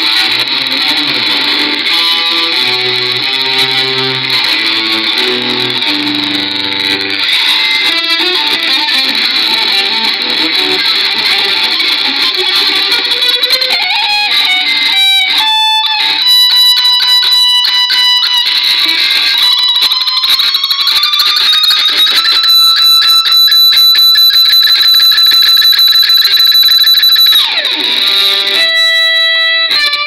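Heavily distorted electric guitar playing a metal song. A low riff gives way to short separate notes, then a pitch rising into a long held high note that cuts off near the end.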